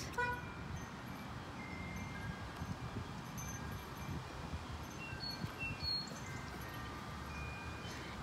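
Wind chimes ringing faintly, single notes at different pitches sounding and dying away one after another, over a low steady background rumble.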